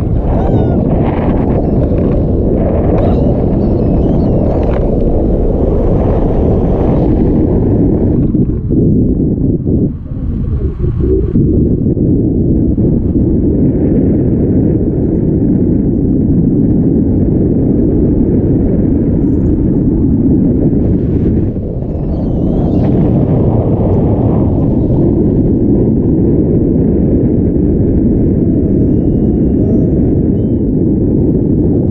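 Wind buffeting the action camera's microphone in paraglider flight: a loud, dense low rumble that briefly drops around ten seconds in and again near twenty-two seconds.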